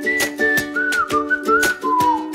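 Background music: a whistled melody gliding over plucked-string chords and a light, steady percussive beat.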